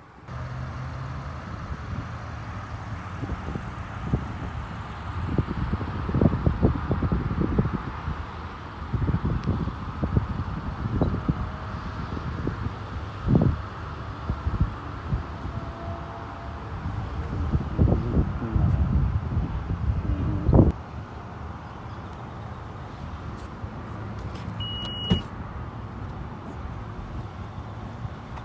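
Wind rumbling and buffeting on a phone microphone outdoors, with irregular knocks from handling, gustier in the first two-thirds and calmer later. Near the end there is a single short high beep as the minivan's power tailgate starts to open.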